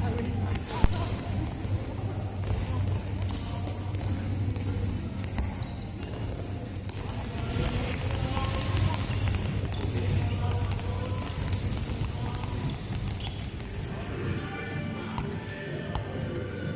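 Handballs bouncing on a sports-hall floor, with sharp repeated impacts echoing in the large hall over a steady low hum, voices of players and music underneath.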